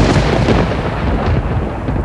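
A loud, continuous thunder-like rumble with a rain-like hiss over it, a sound effect in the recording that replaces the band's music just before this point.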